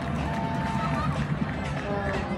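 Arena PA music with held notes, over the steady chatter of a hockey crowd.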